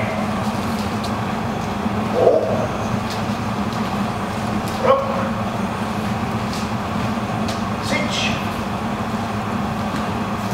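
Steady low hum of room background noise, broken by three short shouted calls about two, five and eight seconds in, with a few light taps between them.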